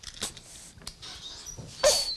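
Infant whimpering and fussing while hearing aids are fitted into her ears, over light rustling and small clicks from the handling. A short, loud cry comes near the end.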